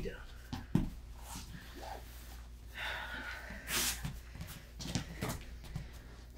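Two wrestlers getting up off a foam wrestling mat and resetting: scattered soft thumps and rustles of bodies and shoes on the mat, with a few breaths or snorts in between.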